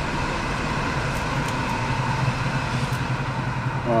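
Steady road traffic noise, with a low engine hum that grows louder about a second and a half in.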